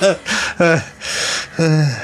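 Men's voices in short voiced sounds between talk, with two breathy gasps of air, one near the start and one in the middle.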